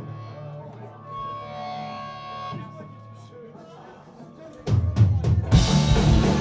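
A live punk rock band between songs: held electric guitar tones and amplifier hum, then a few sharp drum hits about five seconds in and the full band starting a song loud, with drums and electric guitars.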